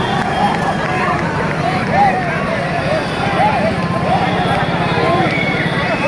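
Crowd of marchers calling out and chanting, many voices overlapping with no single clear speaker, over a steady low drone.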